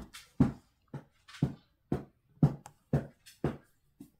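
Diamond-painting drill pen tapping, a steady run of short, sharp taps about two a second.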